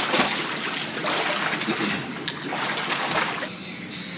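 Water splashing as a swimmer strokes across a pool, arms slapping the surface again and again; the splashing drops away near the end.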